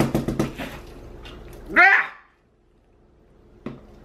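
A woman's exasperated wordless vocal noises with a few light knocks as her fist presses into a wet, paint-covered fabric bib on a plastic sheet. A loud rising squeal about two seconds in is the loudest sound, followed by a sudden drop to near silence and a single click.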